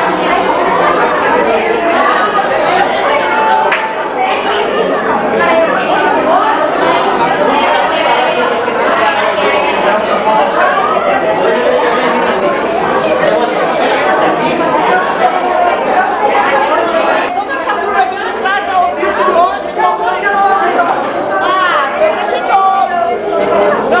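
Crowd chatter: many voices talking over each other.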